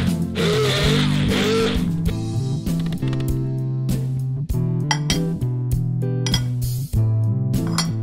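An immersion (stick) blender runs in short spells, puréeing pesto in a glass jar, and stops about two seconds in. Guitar background music plays throughout.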